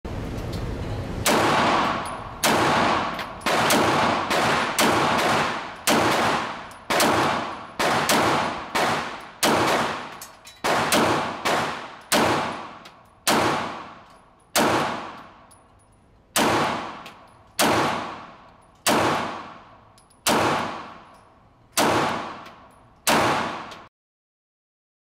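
Springfield Armory Hellcat Pro 9mm pistol firing a long string of shots, roughly one a second and sometimes faster, each followed by a long echoing decay off the concrete walls of an indoor range.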